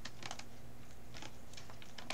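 A few soft, quick clicks and taps in small clusters, the kind of handling noise of paper or fingers close to the microphone, over a steady low electrical hum.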